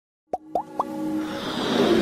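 Intro logo sound effects: three quick rising pops about a quarter second apart, then a swelling electronic rise with held tones underneath.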